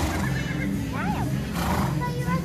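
A horse whinnies briefly, a quick up-and-down call about a second in, over steadily playing music.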